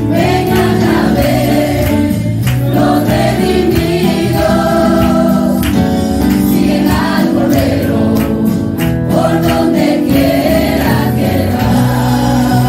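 A mixed group of male and female singers singing a gospel hymn together into microphones, with sustained, held notes at a steady, loud level.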